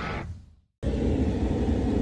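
The tail of guitar music fades out, a brief silence, then a steady low rumble of a vehicle heard from inside its cabin starts about a second in.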